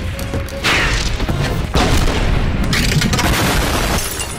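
Explosions from a battle sound-effects track, two big blasts about a second apart with rumbling in between, over an orchestral score.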